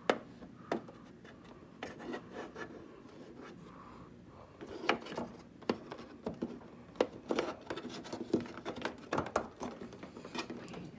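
Hands fumbling a cable plug against the plastic back of a television: scattered rubbing, scraping and light clicks, busier in the second half.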